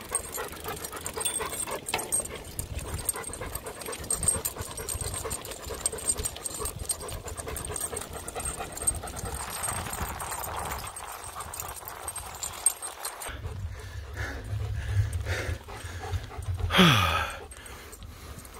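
Labrador retriever panting hard as it runs on a leash alongside a bicycle, over steady wind and tyre noise. Near the end there is a short, loud falling squeal.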